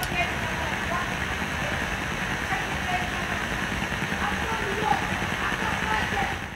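Steady background noise with faint, scattered voices in it.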